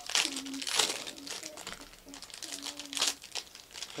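Plastic trading-card pack wrappers crinkling and tearing in three short bursts as packs are opened by hand.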